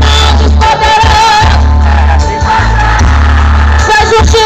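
Live gospel worship music through a stage PA, loud and bass-heavy, with a singer holding long notes with vibrato.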